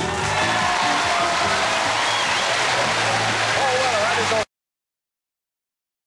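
Studio audience cheering and applauding as the song finishes, with music and some voices still underneath. The sound cuts off abruptly about four and a half seconds in.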